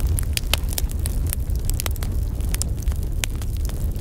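Fire burning, a steady low rumble with many irregular sharp crackles.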